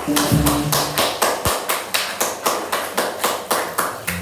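Drum kit played in a steady run of sharp strokes, about four a second, in a live jazz trio. A few upright bass notes sound under it in the first second and a half.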